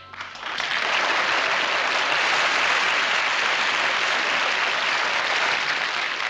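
Studio audience applauding, building quickly in the first half-second and then holding steady: entrance applause for a character stepping onto the set.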